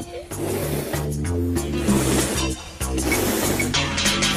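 Children's song backing music with a stepping bass line, overlaid by two long hissing rushes of air: a balloon being blown up, the first about two seconds long, the second about a second.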